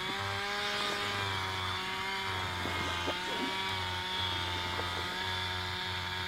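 A small engine running steadily at a constant pitch, with a low hum that cuts in and out every second or so.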